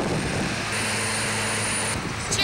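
Combine harvester running in the field, a steady machine drone with a low hum and, from about a third of the way in, a thin high whine.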